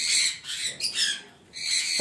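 Caged lovebirds and conures squawking and chattering in a series of harsh, high-pitched calls, with a brief lull about a second and a half in.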